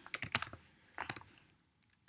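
Computer keyboard being typed on: a quick run of several keystrokes, then one or two more about a second in.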